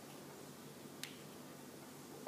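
A single sharp click about a second in, over quiet room tone.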